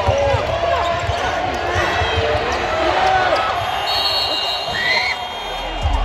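Basketball game in an arena: a crowd shouting and calling out over the thuds of a ball being dribbled on the hardwood, with a referee's whistle blown for about a second near the four-second mark to call a foul.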